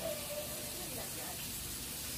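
Meat sizzling on a hot grill pan: a steady, even hiss.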